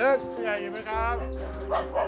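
A voice calling out toward a house, "Village headman, are you home?", with a dog barking in answer just after the call, over soft background music.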